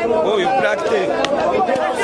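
Several people talking at once, overlapping voices of a crowd chattering with no single voice standing out.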